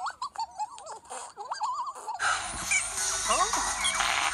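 High squeaky character chatter from the Pontipines: quick little calls that rise and fall, for about two seconds. Then it cuts suddenly to louder, fuller music with chirping sounds over it.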